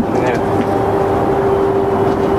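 A motor drones steadily, with a constant hum at one pitch over loud, even noise. A voice is faintly heard about a quarter of a second in.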